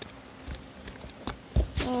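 A Beyblade top spinning in a plastic stadium: a faint steady whir with a few light clicks. A voice starts near the end.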